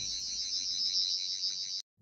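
Toy sonic screwdriver buzzing: a steady, high-pitched electronic whir with a fast warble, cutting off suddenly near the end.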